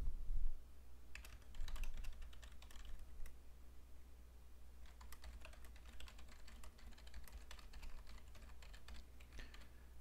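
Computer keyboard typing, faint: two runs of quick keystrokes with a short pause between them, over a low steady hum.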